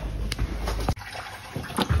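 Liquid running and draining out of a car radiator as it is tipped to empty. The flow drops away sharply about halfway through.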